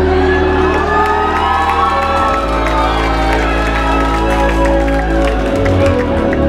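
Loud recorded hip-hop music over a nightclub sound system, with a heavy bass line and sustained melodic lines, and a crowd cheering over it.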